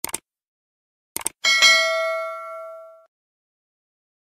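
Subscribe-button sound effect: a mouse click at the start, a quick double click just after a second in, then a notification bell ding that rings out and fades over about a second and a half.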